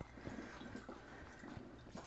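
Faint, scattered small wet ticks and drips as a hand presses rinsed, chopped vegetables in a plastic colander, squeezing out water into a steel sink.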